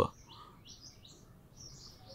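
Faint high-pitched chirping in the background: several short calls, one after another, over quiet room tone.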